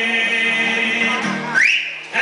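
Live folk performance: a male singer holds a long note over acoustic guitar. About one and a half seconds in it gives way to a short, rising high whistle.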